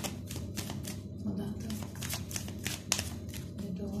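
A tarot deck being shuffled by hand, an overhand shuffle. The cards make a quick, irregular run of short slaps and clicks, several a second.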